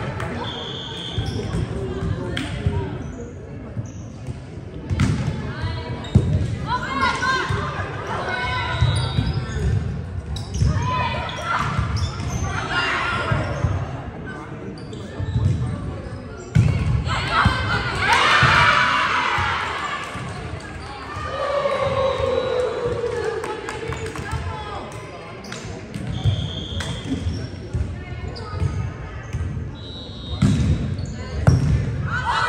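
Indoor volleyball being played in an echoing gym: the ball struck and hitting the floor again and again, with players' calls and shouts. The voices are loudest about two-thirds of the way through.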